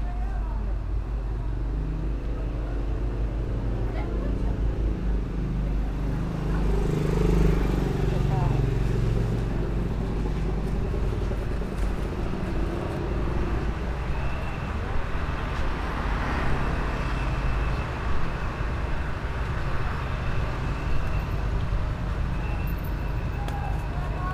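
Busy street-market ambience: indistinct voices over steady road-traffic noise, louder for a spell about seven seconds in.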